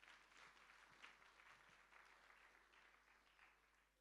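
Very faint applause from a congregation, many hands clapping, dying away about three and a half seconds in.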